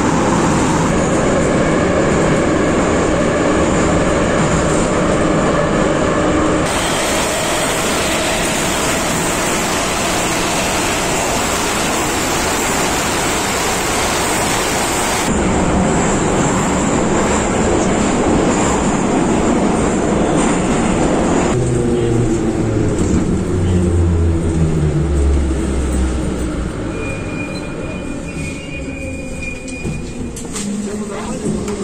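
81-717.5M metro car heard from inside while running through the tunnel: loud, steady rumble of wheels and running gear. From about two-thirds of the way in, the motor whine falls in pitch as the train slows for a station, the noise easing near the end with a thin high squeal.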